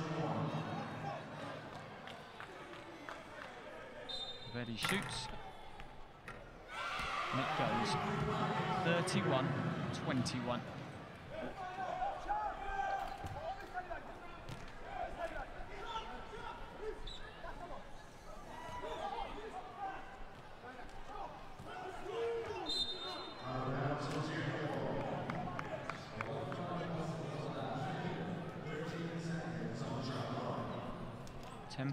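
Basketball bouncing on a hardwood arena floor during a wheelchair basketball free throw, then the crowd cheering for several seconds after the made shot. Voices from the crowd and the court continue as play resumes, with the ball and wheelchairs knocking on the floor.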